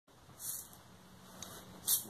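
Two short shakes of a hand shaker, about a second and a half apart, the second louder.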